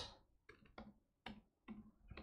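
Faint computer keyboard keystrokes: about half a dozen separate clicks, typed slowly and unevenly.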